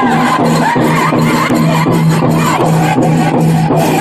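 Powwow drum group: a large drum struck in a fast, steady beat of about three to four strokes a second, with men singing in unison over it.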